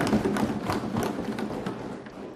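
Seated assembly members applauding, with a clatter of claps and desk thumps that dies away over about two seconds.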